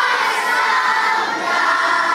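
A crowd of children singing and shouting together.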